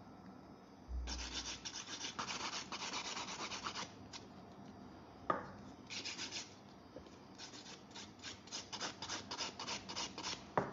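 Hand nail file rubbing back and forth over cured gel on a practice nail tip, levelling the surface: runs of quick scratchy strokes, with a pause around the middle. A soft bump about a second in and a single sharp click a little past halfway.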